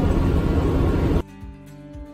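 Passenger-cabin noise of a moving shuttle bus, a steady engine and road rumble, cut off abruptly about a second in and replaced by quieter background music with held notes.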